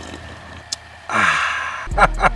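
A breathy, satisfied "ahh" after a swig of beer from a can, the voice falling in pitch, starting about a second in. Music's bass comes in just before the end.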